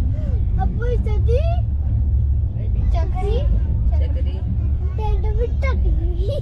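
Steady low rumble of a passenger train coach running along the track, heard from inside the coach, with children's voices chattering over it.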